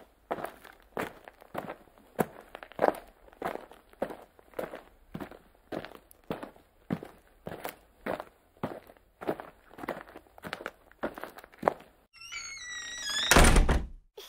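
A steady series of dull thuds, about two a second. Near the end comes a warbling pitched sound, then a short loud burst.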